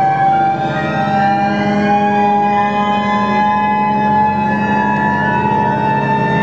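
Electronic concert music: a low steady drone under several sustained tones that glide slowly upward, with no beat.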